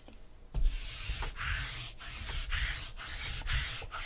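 Adhesive lint roller rolled back and forth over a tabletop in quick strokes, a rough rubbing noise that starts about half a second in.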